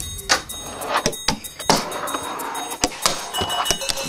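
A fingerboard's wheels rolling on wooden ramps, with several sharp clacks of the board striking the wood.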